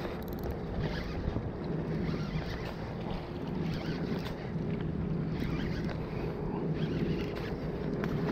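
Steady wind and water noise at a rocky shoreline, with a faint steady low hum underneath.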